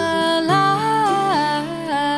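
A slow, gentle folk song: a woman's voice humming a wordless melody in long held notes that glide from one pitch to the next, over soft acoustic guitar.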